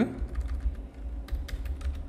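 Typing on a computer keyboard: an irregular run of key clicks, with a faint low hum underneath.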